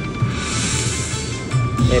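Dragon Cash Golden Century slot machine playing its free-game music and electronic sound effects as the reels spin and stop, with a steady electronic tone and a hiss through the first second.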